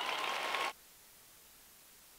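Audience applause that cuts off abruptly under a second in, leaving only a faint steady hiss.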